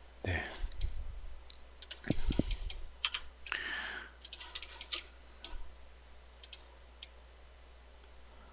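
Computer mouse and keyboard clicking irregularly while working in 3D modelling software, busiest in the first five seconds and sparser after, with a few soft low thumps about two seconds in.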